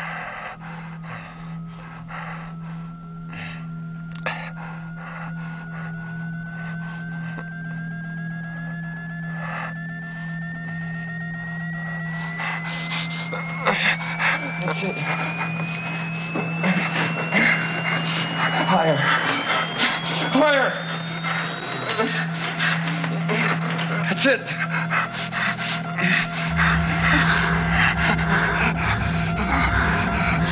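Horror-film soundtrack: one eerie tone climbs slowly in pitch over about 25 seconds above a steady low hum, with panting, gasping breaths. Scattered knocks and scuffles grow busier from about halfway through.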